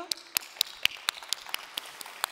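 Applause: distinct hand claps at about four a second over a softer wash of audience clapping.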